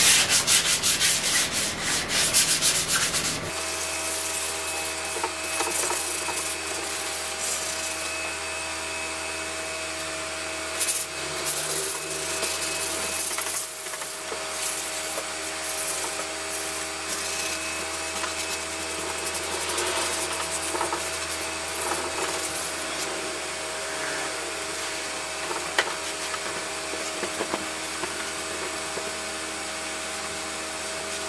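Wet sandpaper rubbed by hand over primer on a metal trunk lid, a rapid scratchy rubbing, with a steady hum underneath from about three seconds in.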